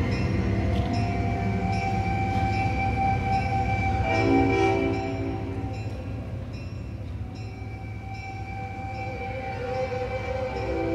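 Live instrumental ensemble holding long sustained, horn-like chords. A chord swells about four seconds in, the music quiets and thins after about five seconds, and it rises again near the end.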